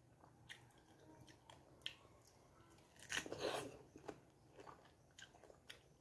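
Faint close-up chewing of a juicy pineapple slice: soft wet mouth sounds and small clicks, louder for a moment about three seconds in.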